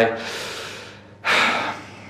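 A man's audible breaths while he hesitates over a hard choice: a fading breath at first, then a louder, sharp breath of about half a second a little over a second in.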